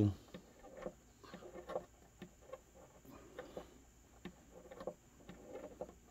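Faint, irregular clicks and handling noise from a hand turning a parameter knob on a Line 6 Pod Go multi-effects unit, with a few soft murmurs in between.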